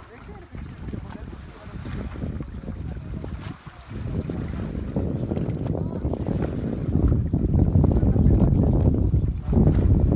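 Wind buffeting the microphone: a rough low rumble that grows much louder about halfway through, with faint distant voices.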